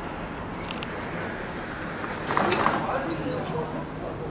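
City street ambience: a steady hum of traffic with voices of passers-by, and a brief louder burst of noise a little over two seconds in.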